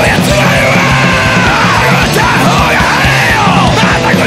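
Loud hardcore punk/metal band playing full on: heavily distorted guitar and bass over fast, dense kick drum, with yelled vocals.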